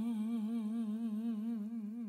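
A single long held note, hummed or sung, with a steady vibrato, slowly fading away in a slow blues song.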